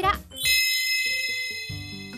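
A bright chime sound effect rings out about half a second in, many high tones sounding together and slowly fading, marking the reveal of the dish; light background music plays underneath.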